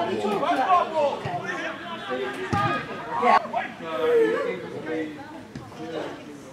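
Several indistinct voices talking and calling over one another, with a short sharp knock about three and a half seconds in.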